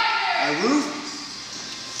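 A man speaking a few words over background music. No stick strikes stand out.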